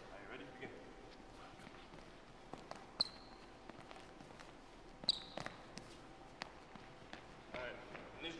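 Sneakers squeaking and footfalls on a hardwood gym floor as a player sprints and side-shuffles. Two sharp, high squeaks stand out, about three and five seconds in, over fainter scattered steps.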